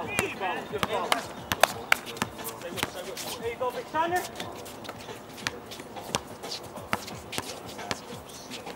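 A basketball bouncing on an outdoor hard court, mixed with players' footsteps. The result is a run of irregular sharp thumps, the loudest about one and a half seconds in.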